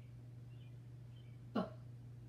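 A pause filled with a steady low hum, then a woman briefly says the letter sound "B" once near the end.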